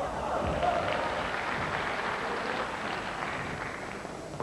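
Audience applauding, swelling at the start and slowly dying away.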